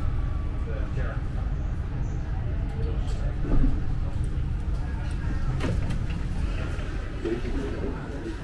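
Amsterdam metro train standing at a station platform: a steady low rumble, with a louder clunk about three and a half seconds in and a few lighter knocks.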